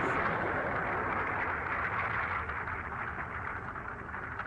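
Cartoon sound effect: a steady rushing, hissing noise that slowly fades, with faint crackles near the end.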